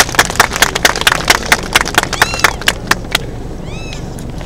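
Audience clapping, thinning out near the end. Over it a hawk gives two short, high, arching calls, one about two seconds in and one near the end.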